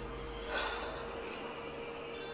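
A person's single short, sharp breath through the nose about half a second in, over a steady hum.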